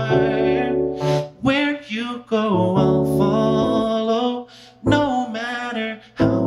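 Live solo song: a singer holding wavering sung notes over sustained chords on a Roland FP-4 digital piano, with a brief break about four and a half seconds in.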